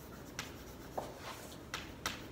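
Chalk writing on a blackboard: about three short, sharp strokes of the chalk against the board.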